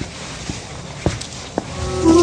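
Footsteps of a man walking off, three steps about half a second apart over a faint hiss. Music comes in at the very end.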